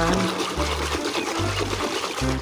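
Water splashing and sloshing in a tub as a hand scrubs a toy clean under the water, over background music with a low, steady bass line.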